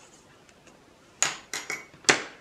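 Small pair of paper scissors set down on a hard work surface: a few light clatters from about a second in, the first the loudest, one with a brief metallic ring.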